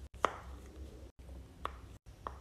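Two short, sharp pops from a silicone pop-it fidget toy, about a second and a half apart, as its bubbles are pressed through.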